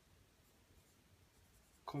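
Faint strokes of a felt-tip marker writing on a whiteboard, with speech starting again near the end.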